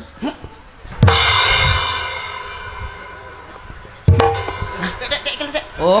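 Drum kit hit: a kick drum with a crash cymbal about a second in, the cymbal ringing out and slowly fading over about three seconds, then a second drum-and-cymbal hit at about four seconds followed by a few more drum strokes.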